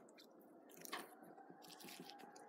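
Near silence, with faint handling sounds of fingers pulling the skin away from a skinned rabbit carcass and a soft tick about a second in.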